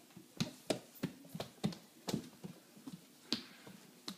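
A baby's hands slapping a hardwood floor as he crawls: an irregular run of about a dozen sharp pats, the loudest about half a second in and near the end.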